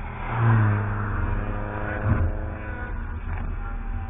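Mini Cooper driving past at track speed: its engine loudest about half a second in, then its note sliding down in pitch as it goes by and fades. A brief thump comes about two seconds in.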